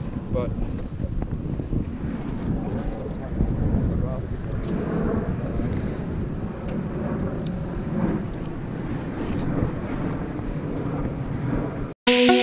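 Wind buffeting the microphone on an open boat: a steady, unpitched low rumble, with a few faint ticks.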